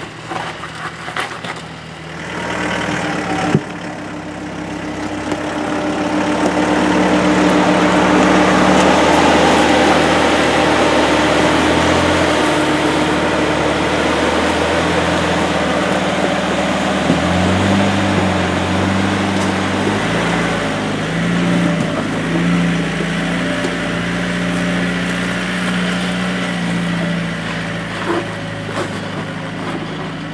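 Land Rover Defender 110's engine running at low revs as it crawls over a rock step, growing louder as it comes close by, with the engine note changing twice about two-thirds of the way through as it works up the ledge. A few sharp clicks near the start.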